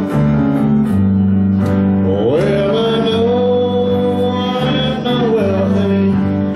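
A man sings a gospel song over guitar and a steady low accompaniment. About two seconds in, his voice rises and holds one long note for a few seconds.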